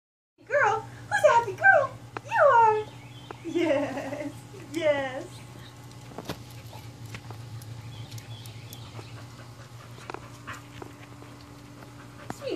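Small dog, a Japanese Chin, giving a quick run of short, high-pitched yips and whines that mostly fall in pitch, over the first five seconds. After that only a steady low hum with faint ticks remains.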